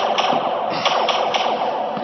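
A steady, loud rushing noise: a cartoon sound effect of a spaceship in trouble, easing slightly near the end.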